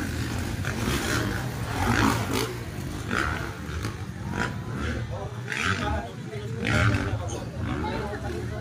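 Motocross dirt bike engines revving on the track, the pitch rising and falling repeatedly, with voices mixed in.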